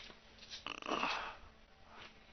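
A Yorkshire terrier vocalising once, briefly, a little over half a second in.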